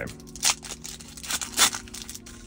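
Foil wrapper of a Pokémon trading-card booster pack crinkling and tearing as it is ripped open and the cards are pulled out. It comes in a few short crackly bursts, the loudest about one and a half seconds in.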